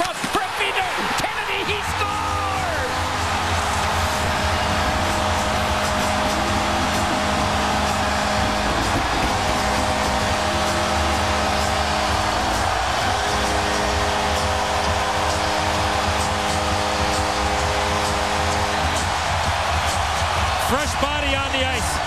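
Hockey arena crowd cheering loudly after a home goal, with a steady multi-note horn chord sounding from about two seconds in until near the end, over thumping music underneath.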